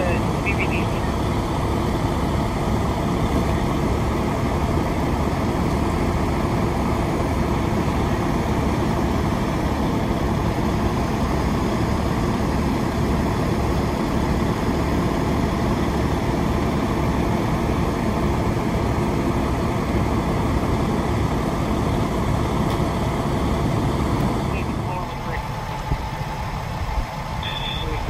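Fire engines' diesel engines running at the scene, a loud, steady drone. Near the end the drone drops away.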